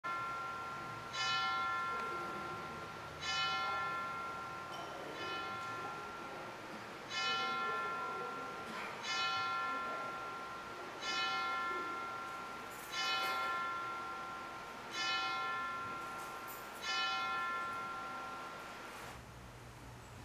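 A single church bell tolling at an even pace, one stroke about every two seconds, nine strokes, each ringing out and fading before the next; the tolling stops a few seconds before the end.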